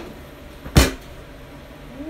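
A single sharp thump about a second in.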